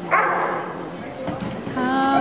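A dog barks once, sharp and loud, right at the start. Near the end a song starts up, with steady sung or played notes.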